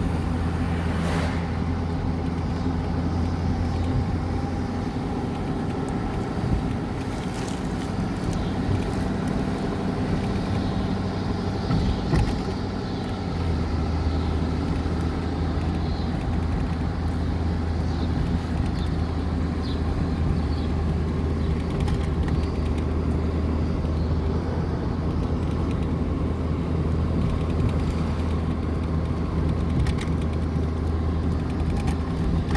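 Engine and road noise heard from inside a vehicle's cabin while driving at town speed: a steady low drone with tyre rumble, the low hum shifting a little about halfway through.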